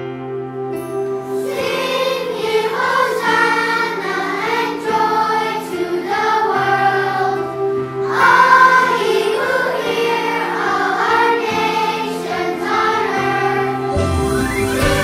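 A children's choir singing over a keyboard accompaniment of held chords. The keyboard plays alone for about the first second and a half before the voices come in, and the voices break off briefly around eight seconds in.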